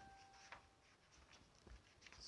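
Near silence with a few faint, short scratching strokes of writing, and a faint steady tone in the first half second.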